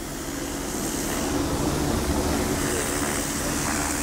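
A motor vehicle's engine passing close by in the street: a steady drone that swells slightly and drowns out the conversation.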